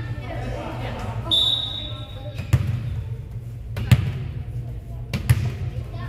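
A short referee's whistle blast, then a volleyball bounced three times on the gym floor, three sharp thuds a little over a second apart, as the server readies to serve after the whistle.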